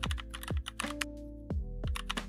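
Computer keyboard keystrokes, a few short clicks, over background music with a deep beat and sustained tones.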